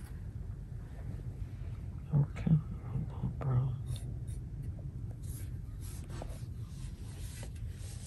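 Soft swishing and scratching of a Chinese painting brush stroking across xuan paper, a run of short strokes in the second half, over a steady low room hum.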